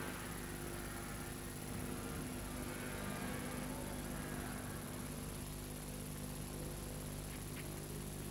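A steady low hum with an even hiss and a faint high whine, without clear events.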